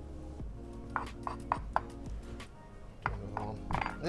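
Kitchen knife cutting lemons on a wooden chopping board: a run of sharp taps of the blade meeting the board, starting about a second in, over steady background music.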